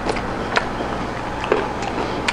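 A few short crisp crunches of someone chewing fried chicken with crispy skin, over a steady low background hum.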